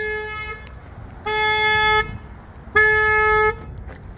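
2018 Honda Ridgeline's horn honking over and over, set off by opening the truck up. It sounds in short, even blasts of one steady pitch, about one every second and a half.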